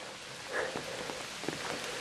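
Steady hiss of water with a few faint ticks.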